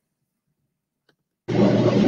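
Dead silence, broken by one faint tick, then a woman's voice starts speaking abruptly about one and a half seconds in.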